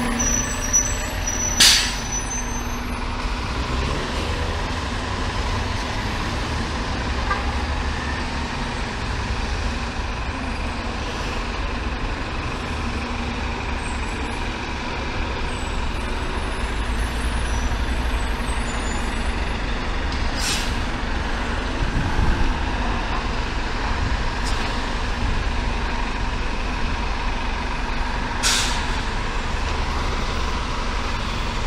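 New York City Transit bus engine running and pulling away amid street traffic, a steady low rumble. Short sharp air-brake hisses sound about two seconds in, again about twenty seconds in and near the end, the first the loudest.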